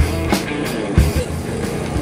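Background rock music with a steady bass line and drum hits.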